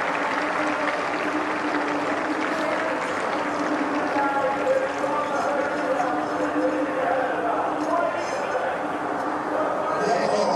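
Steady stadium background of indistinct voices, with no words that can be made out.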